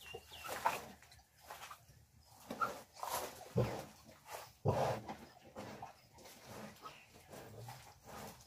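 A sow and her three-day-old piglets grunting and squeaking softly in the pen in short, irregular calls. Two dull knocks come about three and a half and four and a half seconds in, as the pen is handled.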